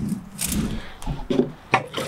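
A coil of copper bonsai wire, freshly annealed and cooling, being handled on wet concrete: a few short scrapes and knocks as it is touched and shifted.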